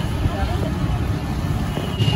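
Background ambience: a low steady rumble with faint voices behind it.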